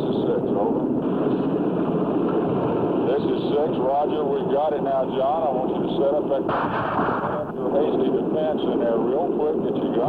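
Old field-recorded battle noise: a steady din of gunfire and rumble with many sharp cracks, under a muffled, wavering voice. A broader, louder crash comes about six and a half seconds in and lasts about a second.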